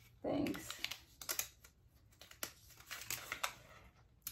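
A small folded slip of paper being unfolded by hand: a scattering of soft, sharp paper crackles. A short vocal sound comes just after the start.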